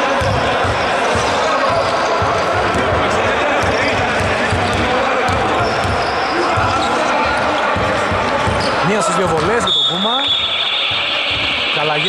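Basketball bouncing on a hardwood court in a large, echoing hall, with a steady murmur of voices; near the end a few short squeaks as players start to run.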